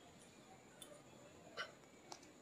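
Near silence: room tone in a pause between sentences, with two faint short clicks about a second and a second and a half in.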